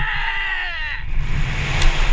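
A man's long excited yell, slowly falling in pitch and dying away about a second in, then wind rushing over the body-mounted camera's microphone as he drops on the rope.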